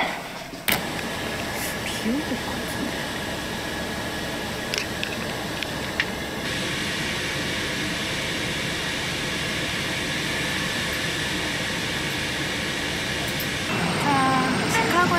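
A steady, even rushing noise with no voices, like a vehicle ride or an air conditioner, changing slightly in tone about six seconds in.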